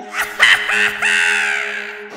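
Crow-like cawing: a short caw about half a second in, then a longer drawn-out one falling in pitch, over a low steady drone.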